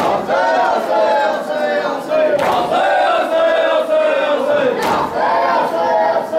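A crowd of men chanting a mourning lament (noha) together in loud, sustained, wavering notes. Sharp slaps of matam chest-beating come about every two and a half seconds.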